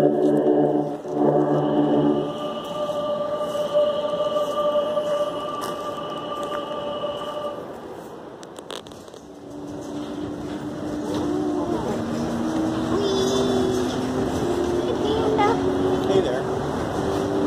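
Long held musical tones fill the first half. After a break about nine seconds in, a monorail car runs with an electric motor whine that steps up in pitch as it picks up speed.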